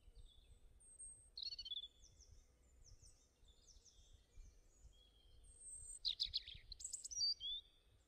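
Small songbirds chirping and twittering faintly in a string of short, high calls, with a louder run of rapid chirps about six to seven seconds in.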